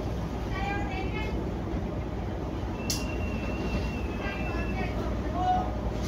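Steady low rumble aboard a cargo ship in strong wind and heavy seas, with faint voices in the background. About halfway through, a sharp click is followed by a thin high tone lasting about two seconds.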